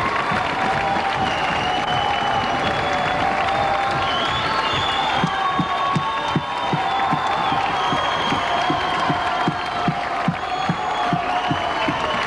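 Large theatre audience applauding and cheering, with long held tones over the crowd noise. From about five seconds in, a steady low beat of about two thumps a second joins in.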